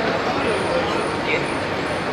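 Steady outdoor street background noise, a constant hiss-like hum from traffic, with faint, indistinct voices.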